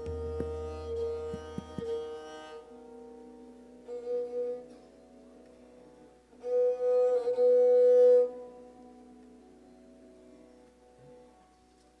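A bowed, fretted Indian string instrument playing long held notes in Raag Kalyan, swelling loudest in a phrase about two-thirds of the way through. A few soft knocks come in the first two seconds.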